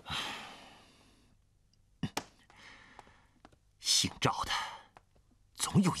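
A man's heavy, angry sighs: a long exhale fading over the first second and another sharp huff about four seconds in, with a single knock about two seconds in. He starts to mutter just before the end.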